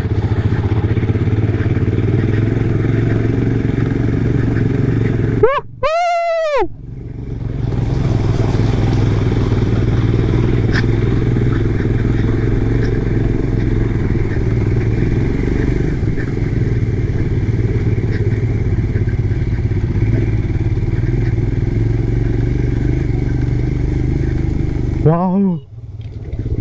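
Motorcycle engine running steadily while the bike is ridden over a rough dirt track. The engine sound breaks off briefly about six seconds in, with a short voice-like call.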